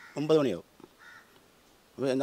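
A man's short spoken sound in the first half-second, then a faint, brief bird call about a second in, against a quiet background.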